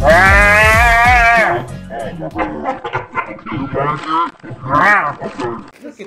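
Music with a long, wavering high sung note over a steady bass, cutting off about a second and a half in; then scattered voices with a short high call near the end.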